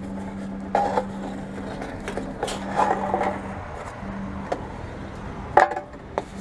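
TOMRA reverse vending machine humming steadily as aluminium drink cans are pushed into its intake, with several short clunks and rattles as the cans go in; the loudest comes near the end.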